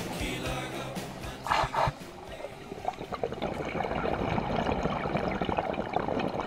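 A song ends in the first two seconds. After that comes muffled underwater noise picked up through a GoPro's waterproof housing, with dense faint crackling that slowly grows louder.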